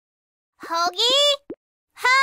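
About half a second of silence, then a high-pitched, child-like voice gives one short wordless exclamation that rises in pitch, followed by a brief pop.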